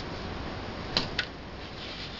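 Two light clicks about a second in, a fifth of a second apart, as a rolled-up slice of deli meat is set down on a glass plate, over a steady low hiss.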